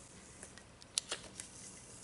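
Plastic transfer tape being peeled back off a mug, giving a few faint crackling ticks, the sharpest about a second in.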